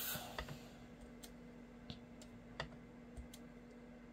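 Several faint taps and clicks from a clear acrylic stamp block being pressed onto paper, stamping off some of the ink before stamping the card. The taps are spaced unevenly, under a second apart.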